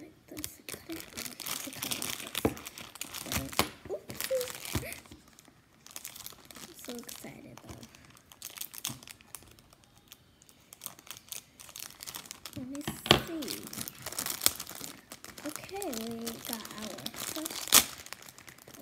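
Thin clear plastic packaging crinkling and rustling in irregular bursts as it is handled and torn open. There are a few sharp crackles, the loudest about 13 seconds in and just before the end.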